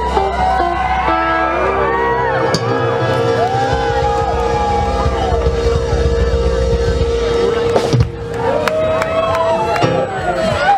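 Live rock band sustaining a held chord over the bass while the crowd cheers and whoops. The held sound stops about eight seconds in, and crowd noise carries on.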